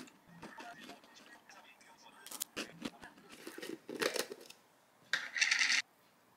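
Close-up eating sounds: crisp bites and chewing of a yogurt-topped biscuit, in short irregular crackly bursts, with a louder rasping noise shortly before the end.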